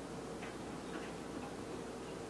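Marker pen writing Chinese characters on a whiteboard: a few faint short ticks and scratches of the strokes over a steady background hiss and hum.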